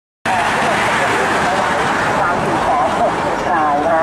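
Steady road noise from a convoy of pickup trucks passing on a highway, with a voice talking over it, clearer near the end.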